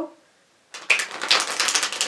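A deck of tarot cards being shuffled by hand: a rapid, dense run of card flicks and clicks starting under a second in.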